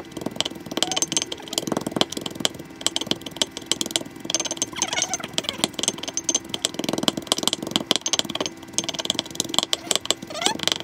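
A wooden pestle pounding chili peppers in a mortar: a quick, uneven run of dull knocks, several a second.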